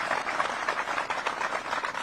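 An audience of soldiers applauding, a dense steady patter of many hands clapping.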